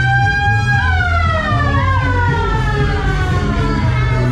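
A siren-like wailing tone rises, peaks about a second in, then slowly falls, over loud fairground ride music with a heavy bass beat.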